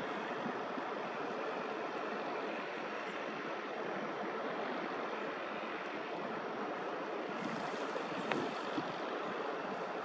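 Steady rushing outdoor noise of wind and distant surf, with one faint click a little after eight seconds in.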